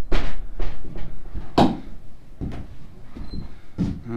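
Footsteps on old wooden floorboards in a small stone room: about six uneven knocks, the loudest about a second and a half in.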